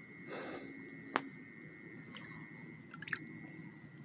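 Quiet handling noises as a small caught bass is held for release: a soft rustle, then a sharp click and a few light clicks, over a faint steady high tone.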